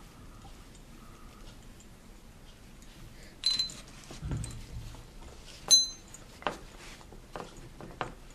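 Small steel vise made from channel sections being handled and fitted against a stack of books: light clicks and knocks, with two sharper metallic clinks that ring briefly, about three and a half seconds in and again near six seconds, the second the loudest, and a dull thump between them.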